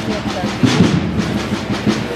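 Procession drums beating at an uneven pace, with a murmur of crowd voices beneath.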